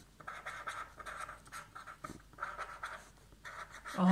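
Pen scratching on a paper pad as a word is written by hand, in short, irregular strokes.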